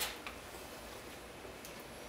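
A few faint ticks and light handling sounds at the start, from hands working a freshly wire-cut clay jar loose from the potter's wheel head, over a low, quiet hum.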